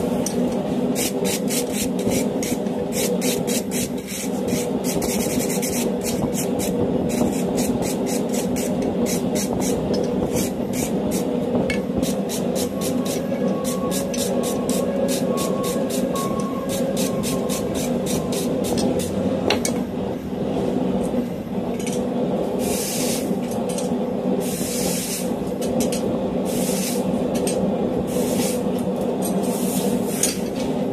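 Steel wire brush scrubbing scale off the hot jaws of a freshly forged blacksmith tong in quick, even strokes, a few a second, changing to fewer, longer strokes in the last third. A gas forge runs steadily underneath.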